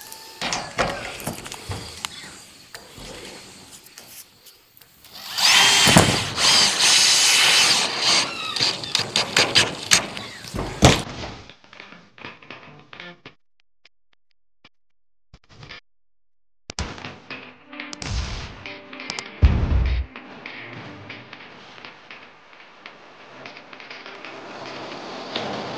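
Cordless DeWalt driver running self-drilling screws into corrugated steel roofing panels: a long spell of driving in the middle and shorter bursts later, over background music.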